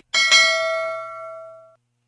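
Notification-bell ding sound effect of a YouTube subscribe-button animation: a bright bell struck twice in quick succession, ringing for about a second and a half before cutting off.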